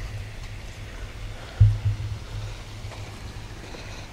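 Low rumble of wind and handling noise on a handheld camera's microphone, with a brief louder thump about one and a half seconds in.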